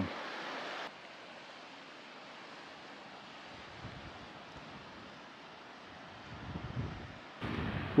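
Faint, steady rush of the creek flowing over rocks at the bottom of the canyon, with a few low gusts of wind on the microphone near the end.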